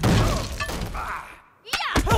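Animated-film fight sound effects: a crash of shattering, breaking debris with short voices mixed in. It dies away almost to silence about a second and a half in, then two sharp hits come just before the end.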